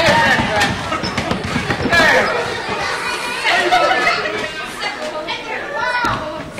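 Several people talking and calling out over one another in a large hall, with no clear words.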